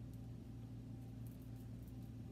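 Quiet room tone: a steady low electrical hum, with no distinct sound from the hands.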